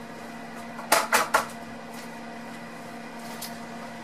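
Three quick knocks of kitchen cookware being handled, close together about a second in, over the steady hum of an open, preheated oven.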